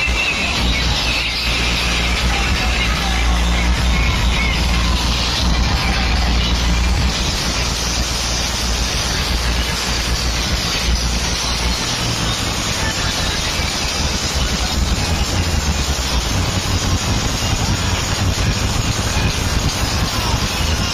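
Loud DJ sound system with stacked speaker cabinets playing music with heavy bass, mixed with the noise of a dense crowd.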